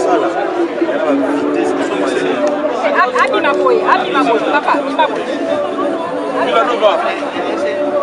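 Chatter of a small crowd: many people talking at once, their voices overlapping so that no single speaker stands out.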